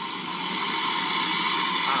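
Steady hiss of steam and hot water blowing out of a Nuovo Simonelli Oscar-type espresso machine's steam wand, its valve opened wide. The boiler is being emptied under pressure through the steam valve to drain out the descaling solution.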